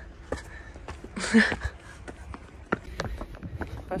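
Footsteps climbing stone trail steps: irregular taps and scuffs, coming closer together near the end, with a short breathy voice sound about a second in.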